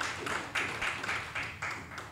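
Audience applauding: a short round of dense, irregular clapping.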